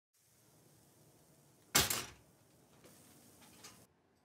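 A single sharp knock about two seconds in, ringing out briefly over quiet room tone, followed by a couple of faint soft rustles.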